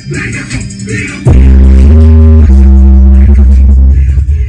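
Bass-boosted hip-hop played very loud through a Logitech Z-2300 speaker system and its subwoofer. About a second in, a long, deep sub-bass note takes over, shifting pitch a couple of times, before the beat returns near the end.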